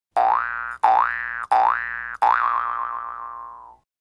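Cartoon 'boing' sound effect, four in quick succession, each a quick rise in pitch; the fourth is longer, wavers and fades away.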